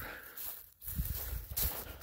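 Footsteps on dry, gravelly lake-shore dirt and dead grass. Uneven crunching steps start about a second in.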